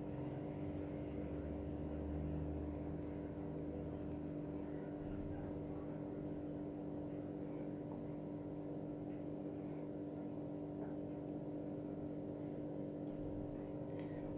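A steady background hum made of several constant tones, with a slightly stronger low rumble in the first few seconds.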